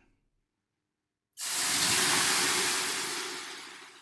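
Water thrown onto the hot stones of a sauna heater, flashing into steam: a sudden loud hiss about a second and a half in that slowly dies away.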